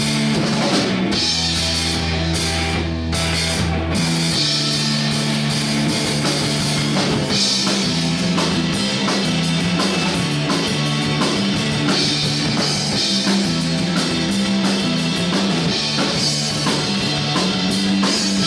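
A live rock band plays an instrumental passage on electric guitar, bass guitar and drum kit, with a steady beat of drum strokes under held low bass notes that change every few seconds.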